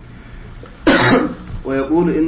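A man coughs once, clearing his throat, about a second in.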